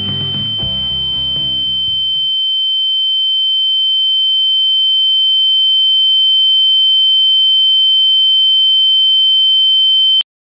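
A single steady high-pitched electronic tone that slowly grows louder, then holds. It continues alone after closing music ends about two seconds in.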